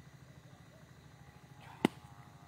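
A single sharp click near the end, over a faint steady low hum.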